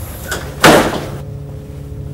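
A door slams shut once, a little over half a second in, the bang dying away within about half a second, over a steady low drone.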